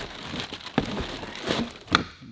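Plastic wrapping crinkling and rustling as it is pulled out of a cardboard box, with scattered sharp crackles and one louder click near the end.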